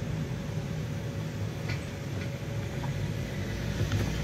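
Steady low rumble of a car driving along a road, engine and tyre noise heard from inside the moving car.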